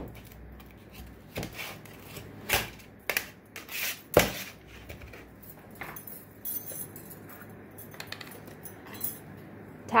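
Metal clinks and knocks, with soft scraping, as a steel ruler strikes excess casting sand off a packed metal flask half and the flask is handled on a metal tray. There are several sharp knocks, the loudest about four seconds in.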